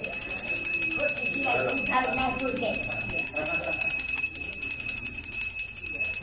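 Hand bell rung rapidly and continuously in temple aarti worship, a steady, high, shimmering ring.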